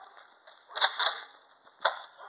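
Three sharp shot-like pops from a toy foam-dart blaster being fired: two in quick succession about three-quarters of a second in, and a third near the end.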